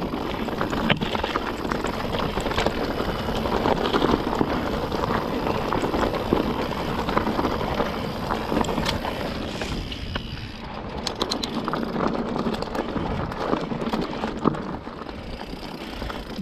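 Mountain bike rolling over a trail of loose, sharp stones: continuous tyre crunch with frequent clicks and rattles from stones and the bike, easing briefly about ten seconds in.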